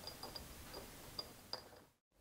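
Faint handling sounds of a metal lathe chuck being held against its back plate: two small light clicks past the middle, then a fade to silence.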